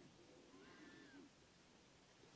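Near silence: room tone, with a faint, brief high-pitched sound from about half a second to a second in.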